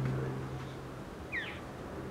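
A small bird chirps once, briefly, over a faint low hum that cuts off about halfway through.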